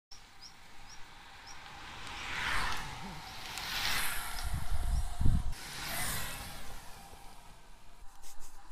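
Wind rushing over the microphone of a camera on a moving road bicycle, swelling in three whooshes, with low buffeting rumbles loudest just past the middle.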